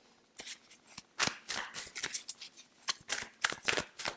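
A tarot deck being shuffled by hand: a run of quick, irregular flicks and slaps of card on card, starting about a second in.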